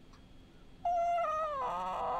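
A woman's high-pitched whining squeal of laughter: about a second in, one long held note that slides downward in pitch.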